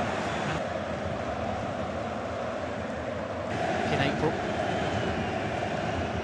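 Football stadium crowd noise: the steady sound of a large crowd of fans, with a few brief high whistle-like sounds about four seconds in.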